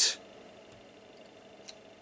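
Faint steady hiss and low hum of a quiet electronics bench after a short burst of noise at the very start, with one tiny tick near the end. The powered-up ICOM IC-271H transceiver gives no audio from its speaker.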